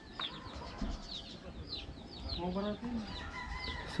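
Chicks peeping all around: many short, high, falling peeps repeating without pause. A single lower call stands out a little past the middle.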